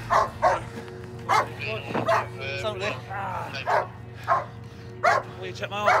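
Police dog barking repeatedly in sharp single barks, about one every half second to a second.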